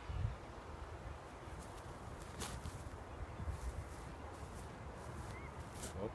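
Quiet outdoor background: an uneven low rumble, with a few faint clicks and one brief faint chirp near the end.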